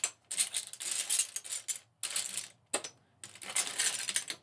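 Seashells clattering and clinking against one another as a hand rummages through a box of loose shells. The rattling comes in three or four runs of a second or so each.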